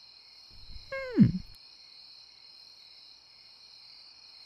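Steady night-time chirring of crickets. About a second in, a short pitched sound falls steeply in pitch.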